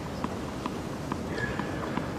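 Tennis ball bounced repeatedly on a hard court before a serve, a sharp tap about twice a second, over steady arena background noise.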